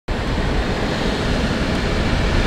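Steady car cabin noise: an even rushing hiss over a low rumble.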